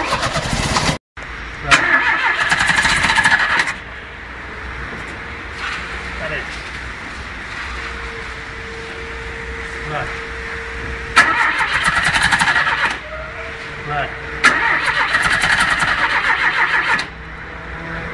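Starter motor cranking a Chevrolet Chevy 500's 1.6 four-cylinder flex-fuel engine in four bursts of about one to two and a half seconds each, with a fast, even beat; the engine does not catch and run between bursts.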